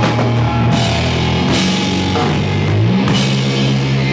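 Rock band playing loud live: guitars and bass over a drum kit with crashing cymbals. The low bass line steps up in pitch about three seconds in.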